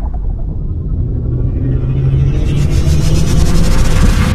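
Cinematic logo-intro sound effect: a deep rumble that swells steadily, with a shimmering high hiss building on top in the second half.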